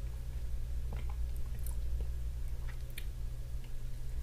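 Faint wet mouth clicks and lip smacks from a person working a sip of bourbon around the mouth, a few scattered ticks over a steady low hum.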